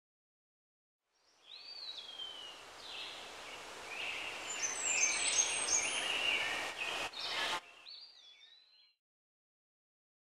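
Tule elk bull bugling in the autumn rut: a high whistle that rises and falls, then a run of stepped high notes over a noisy background. It cuts off abruptly, leaving a fainter gliding call that fades out shortly before silence.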